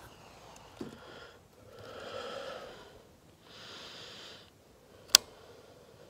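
Two long breaths, one after the other, then a single sharp click near the end as the AR-15 rifle is handled and brought to the shoulder. There is a smaller knock about a second in.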